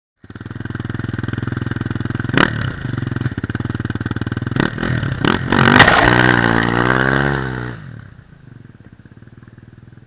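KTM 250 enduro dirt bike engine running, with a few sharp cracks. Near the middle it is revved, its pitch rising and falling, before dropping to a much quieter running sound.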